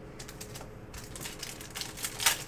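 Foil wrapper of a Panini Prizm Soccer card pack crinkling and crackling as it is handled and torn open, a run of small sharp clicks that grows busier toward the end.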